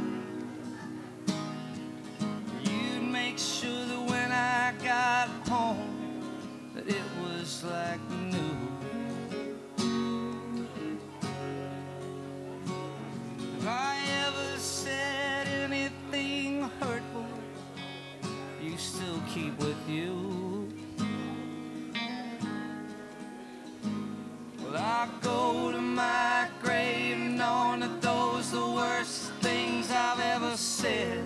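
Live music: a strummed acoustic guitar with an electric guitar, playing a mid-tempo indie-rock song. A wavering melodic line comes and goes in phrases.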